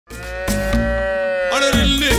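A buffalo calf mooing: one long call lasting about a second and a half, sagging slightly in pitch at the end. Low beats of music sound beneath it, and the music takes over near the end.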